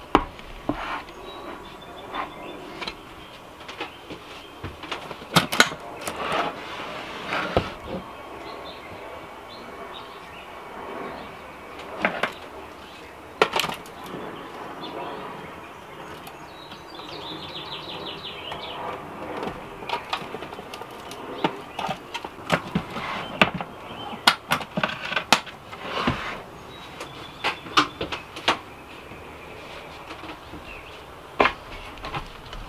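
Handling noises as batteries are loaded into a metal Bat-Safe battery box and plugged in: scattered sharp clicks and knocks from the lid, connectors and leads, with a short run of fine ticks a little past halfway.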